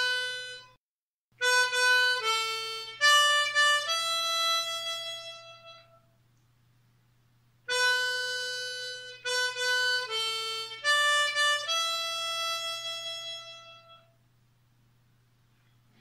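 Diatonic harmonica in A playing single notes: a short melodic phrase beginning on the 4-hole draw, played twice with a pause between, the last note of each phrase held and fading.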